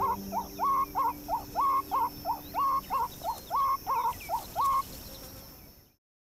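Meerkat alarm calls, a rapid run of short calls at about four a second, some rising and some with a falling hook: the call that means a bird of prey approaching fast. The calls stop near the end and the sound fades out.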